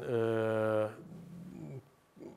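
A man's drawn-out hesitation sound, a steady held 'ööö' lasting about a second, followed by a fainter short murmur.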